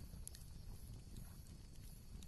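Faint low background rumble with a few soft clicks in the first half second.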